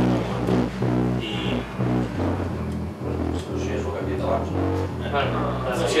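A low instrumental line played in a run of short, held notes, the pitch changing every half second or so.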